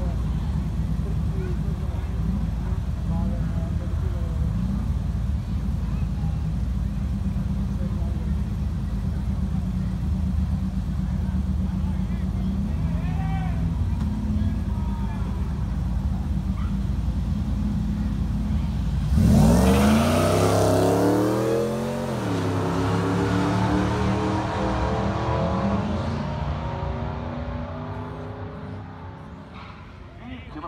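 A Ford SVT Lightning's supercharged V8 and a Mustang's engine idling at the drag-strip start line, then launching together about two-thirds of the way in: a sudden loud burst of revs climbing in pitch, dropping at each gear shift and climbing again, then fading as the cars pull away down the track.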